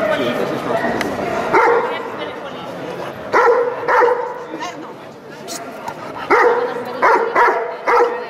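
A dog barking repeatedly in short, sharp barks, about seven in all, coming singly and in pairs, over a background of crowd chatter.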